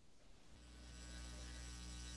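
Faint electrical mains hum, a steady buzz of evenly spaced tones, fading in about half a second in and slowly growing louder.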